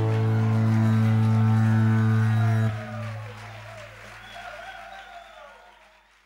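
Live band's final chord held and ringing, then damped about three seconds in, leaving a fading tail with faint crowd cheering that dies away to silence at the end.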